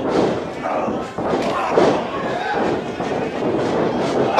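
Forearm strikes and body impacts thudding in a wrestling ring, several times, over crowd voices in a large hall.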